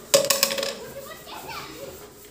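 A short clatter of hard knocks near the start, with a brief metallic ring, then children's voices chattering.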